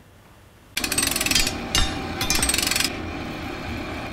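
A power tool rattling in two bursts, the first about a second long and the second about half a second, over a steady ringing hum that fades away near the end.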